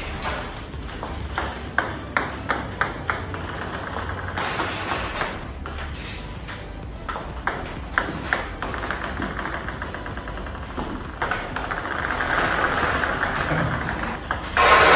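Celluloid-style plastic table tennis balls clicking sharply in quick, irregular clusters as a coach serves them one after another: the racket strikes each ball and it bounces on the table.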